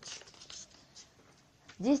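A short pause in a woman's narration holding only faint, scratchy rustling and breath noises. Her voice comes back just before the end.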